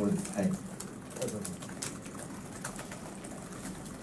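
A faint, distant voice speaking off-microphone in a room, after a brief bit of close speech at the very start, with scattered light clicks.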